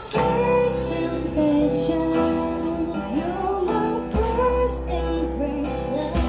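Young women singing a song live into microphones, with acoustic guitar and keyboard accompaniment.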